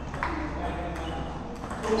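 Table tennis ball being played in a rally: a couple of sharp, high clicks as it strikes bat and table.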